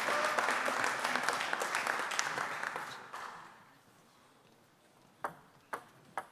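Spectators applauding after a point, dying away after about three seconds. Near the end come two sharp taps of a table tennis ball being bounced.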